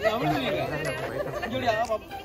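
Several people talking over one another: a group's lively chatter.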